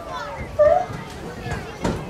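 Indistinct talking of children and adults, with a short thump near the end.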